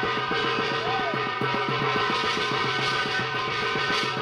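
Korean shamanic ritual percussion at a fast pace: quick even strokes, about ten a second, under a layer of sustained metallic ringing.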